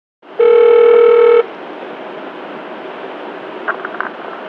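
A single steady telephone tone lasting about a second, then the steady hiss of an open phone line with a few faint clicks near the end.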